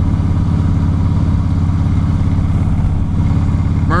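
Harley-Davidson Softail Springer's V-twin engine running steadily while the bike cruises down the road.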